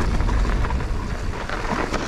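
Riding noise from a mountain bike on a dirt trail descent: wind rushing over the camera microphone and knobby Maxxis Assegai tyres rolling on gravel, a steady low rumble with light scattered clicks.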